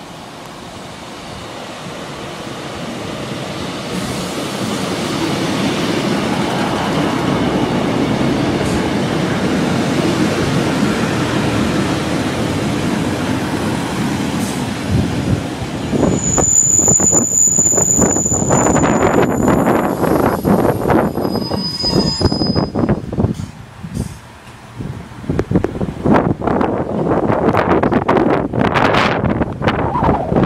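A diesel passenger train approaching and running into the platform, its sound building over the first several seconds. About halfway through, the brakes give a sharp, high squeal for a few seconds, then a shorter, lower squeal as it slows to a stop, followed by wind buffeting the microphone.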